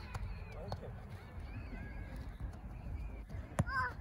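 Wind rumbling on the microphone in open air, with a few faint short bird calls and a soft knock or two.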